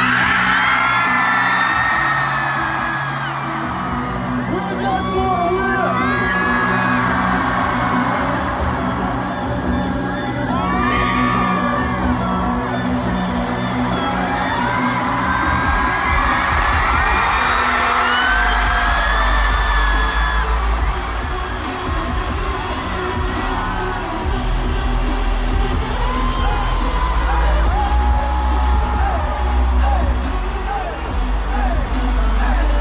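Loud live pop-concert music with singing and crowd whoops; a deep bass comes in a little past halfway.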